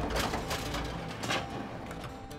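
Garbage truck's cart tipper lifting a plastic compost cart: the truck's low rumble with mechanical clanks from the lifting arms, one just after the start and another just over a second later.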